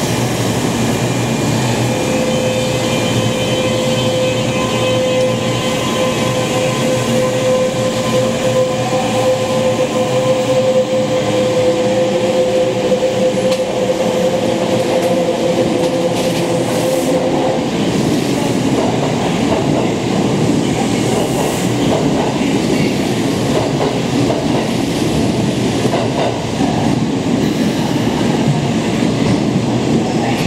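Kintetsu 22000 series limited express electric train pulling out of an underground station. A steady whine from its electric drive, with fainter tones rising as it gathers speed, gives way about halfway through to a rumble and clatter of wheels on rail as the cars roll past and away.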